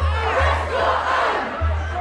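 A large crowd, many voices raised together, over a low rumble on the microphone.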